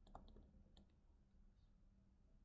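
Near silence with a few faint clicks of a stylus tip tapping on a tablet screen during handwriting: a couple near the start and one a little before halfway, over a steady low hum.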